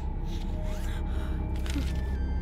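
A woman gasping and breathing shakily as she starts to cry, a few sharp noisy breaths.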